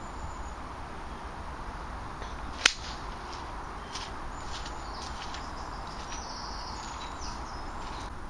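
A golf club striking the ball on a full shot: one sharp crack about two and a half seconds in, over a steady outdoor background hiss.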